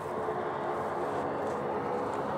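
Single-engine propeller jump plane running steadily as it touches down and rolls along a grass airstrip, a steady engine-and-propeller drone.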